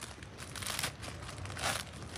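Plastic bag crinkling and rustling in irregular bursts as it is handled and opened, loudest about two-thirds of a second in and again near the end.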